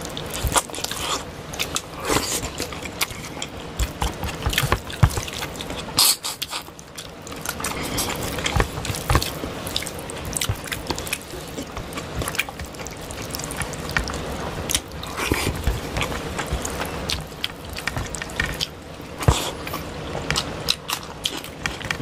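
Close-miked eating sounds: fingers squishing and mixing rice with fish curry, along with chewing and lip-smacking. It is a dense, continuous run of wet clicks and smacks.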